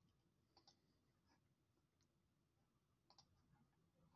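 Near silence, with a few faint clicks of a computer mouse, a pair of them near the end.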